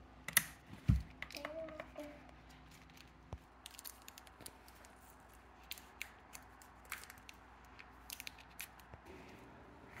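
Scattered light clicks and crinkles of a reciprocating-saw blade's hard plastic packaging being handled.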